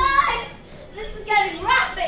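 Children shouting and yelling in play, two high-pitched cries: one right at the start and a second about a second and a half in.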